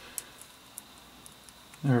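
Two faint light clicks from small objects being handled at a work surface, the first a few tenths of a second in and the second just under a second in; a man's voice starts speaking near the end.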